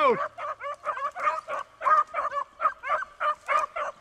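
Hunting dogs on a rabbit chase barking in a quick, steady run of short high calls, about three a second.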